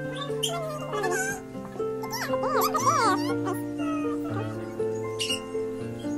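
Background music with sustained notes, over which a newborn puppy squeals in high, wavering cries about a second in and again for about a second from two seconds in.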